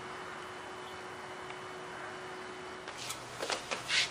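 Steady background hiss with a faint steady hum, and a few soft clicks in the last second.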